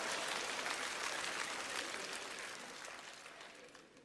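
Studio audience applauding, the clapping dying away gradually to near quiet.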